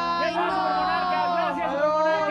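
Several people chanting and calling out together in long, drawn-out sung shouts, over a steady low electrical hum.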